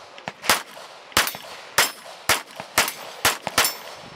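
Pistol shots fired in a rapid string, about two a second, seven strong cracks in all, at steel plate targets that ring faintly when hit.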